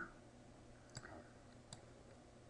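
Two computer mouse clicks, about a second in and again just under a second later, against near silence.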